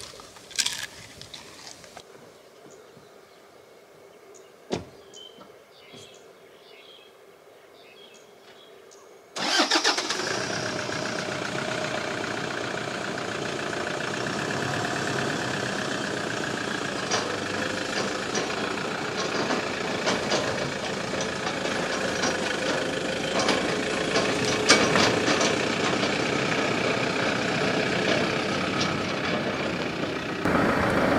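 A pickup truck's engine starts abruptly about nine seconds in and then runs steadily as the truck pulls away towing a small trailer. Before that there is a quiet stretch with a single sharp click.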